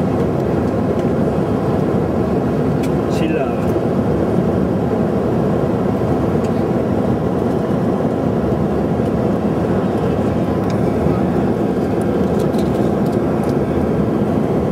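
Steady airliner cabin noise: the aircraft's engines and airflow droning evenly in flight, with a few faint steady tones running through the drone. A brief faint sliding sound occurs about three seconds in.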